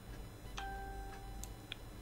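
Quiet room tone with a few faint short clicks and a faint steady beep-like tone lasting about half a second, starting about half a second in.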